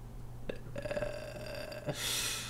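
A cat yowling during a standoff: one held call of about a second at a steady pitch, with a short click just before it and another as it ends.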